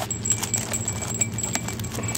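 Cardboard boxes of foil-wrapped baseball card packs being handled: scattered light taps and clicks over a steady low store hum.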